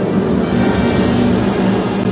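Procession band music with brass, at a loud, dense passage in which a wash of noise all but covers the held brass chords.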